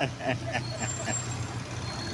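Street traffic: a vehicle engine running steadily nearby, with faint background voices.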